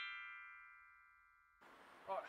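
Intro jingle: a bright chime chord, the held end of a quick run of notes, ringing and fading away. It cuts off about three-quarters of the way through, leaving a faint outdoor background.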